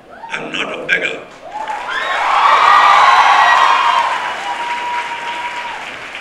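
Audience applauding and cheering, with shouting voices among the clapping. It swells about a second and a half in and fades toward the end.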